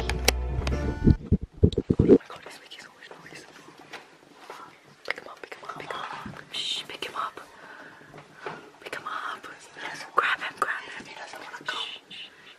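Background music with a strong bass for about two seconds, cutting off abruptly. Then hushed whispering and faint rustling.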